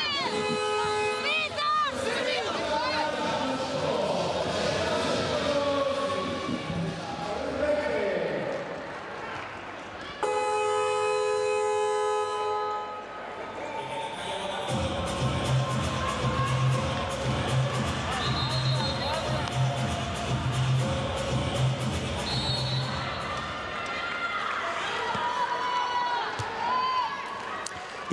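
Handball arena sound during a time-out: voices of a coach addressing a team huddle, with arena music and crowd noise. A long, steady electronic horn sounds about ten seconds in, and a shorter one at the very start.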